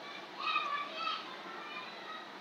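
High-pitched calls in the background, a short run of them about half a second in.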